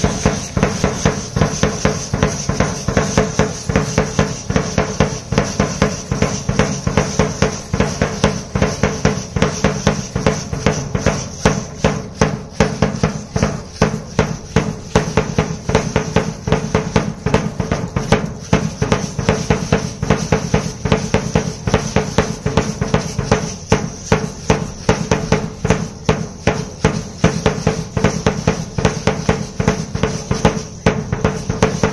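Marching drum beaten with sticks in a steady, quick, repeating rhythm, the beat for a danza de indios dance.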